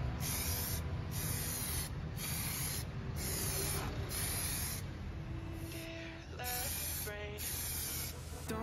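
Aerosol spray-paint can hissing in a series of short bursts, each under a second, with brief pauses between them, as a helmet shell gets a coat of red paint. Music comes in over the last few seconds.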